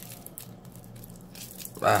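Clear plastic shrink wrap crinkling in irregular light crackles as fingers pick at it and peel it off a vape box mod.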